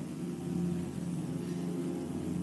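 Soft, steady low chords held on a church keyboard or organ, a sustained drone of several notes with no beat.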